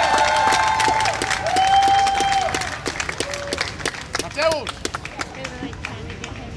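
Crowd applauding and cheering, with long held shouts over the clapping early on; the applause thins out and grows quieter over the second half, with one short shout about two thirds of the way through.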